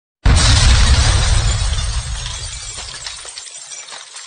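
Intro stinger sound effect: a sudden loud crash with a deep boom, like shattering glass, about a quarter second in, followed by a crackling, tinkling tail that fades steadily.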